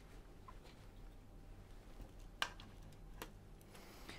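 Faint handling of a camera being fitted onto a handheld gimbal's mounting plate, with one sharp click about two and a half seconds in and a lighter click shortly after.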